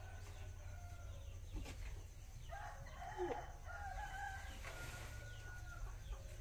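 Faint rooster crowing: a shorter crow at the start and a longer, drawn-out one from about halfway in, over a low steady rumble.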